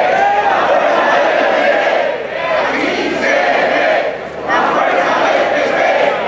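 Large crowd chanting and shouting together, many voices at once, in phrases with short breaks between them.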